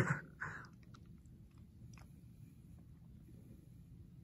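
A person drinking a thick shake from a plastic shaker bottle: a short laugh right at the start, then faint sipping and swallowing with a few soft mouth clicks.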